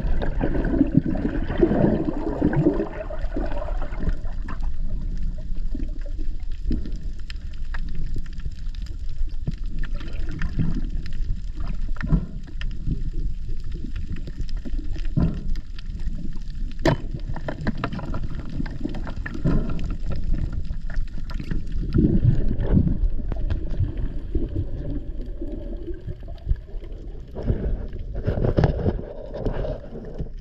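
Underwater sound through an action camera's microphone while freediving: a steady low rumble of moving water, with bubbling and gurgling most dense in the first few seconds and scattered sharp clicks and knocks throughout.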